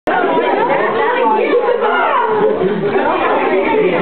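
Chatter of a group of people talking at once, many voices overlapping.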